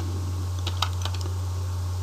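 Computer keyboard: a few key clicks around the middle as a short word is typed, over a steady low electrical hum.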